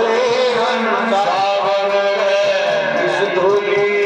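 A man singing a Hindi devotional bhajan into a microphone, in long gliding sung phrases over steady musical accompaniment.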